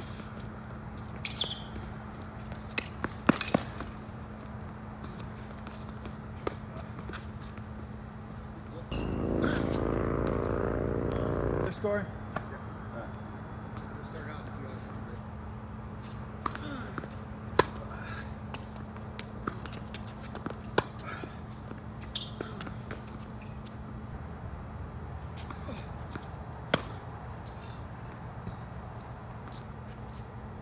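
Insects chirping in a steady high pulsing trill over a low steady hum, with sharp tennis ball strikes off rackets at intervals. About nine seconds in, a louder low droning sound lasts about three seconds, then cuts off.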